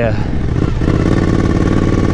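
Suzuki V-Strom 1050's V-twin engine running as the motorcycle rolls slowly over a dirt field, heard from a bike-mounted camera, with its note shifting about a second in.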